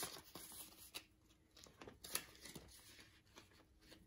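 Faint, scattered rustling of paper banknotes being handled and put into a cash-envelope binder, with a few soft ticks.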